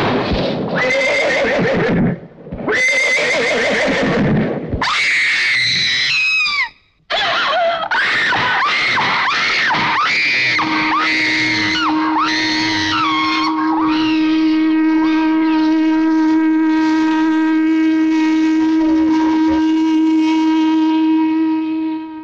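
Horses whinnying again and again, loud wavering calls with short breaks. From about halfway a steady held note comes in and lasts to the end as the whinnies die away.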